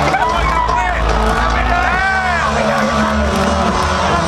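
Loud dance music from a DJ mashup set over a concert PA: a steady deep bass with swooping pitch glides above it, and crowd voices.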